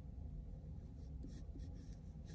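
A red colored pencil scratching faintly on paper in short sketching strokes, over a low steady hum.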